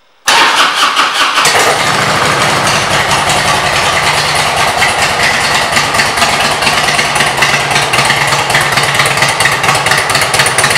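2003 Harley-Davidson Road King's Twin Cam 88 V-twin starting with a sudden loud catch just after the start, running a little faster for about a second, then settling into a steady idle through aftermarket exhaust pipes.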